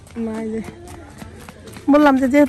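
A person's voice: a short call near the start, then loud speech beginning just before the end. In the quieter stretch between, faint light taps fit a small child's running footsteps on the road.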